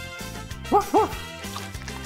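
A dog barks twice in quick succession about a second in, two short rising-and-falling yips dubbed in for a toy dog, over cheerful background music.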